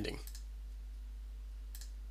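A faint single mouse click near the end, over a steady low electrical hum from the recording setup.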